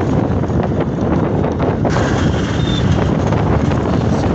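Wind buffeting the phone's microphone: a steady, loud, low rumble.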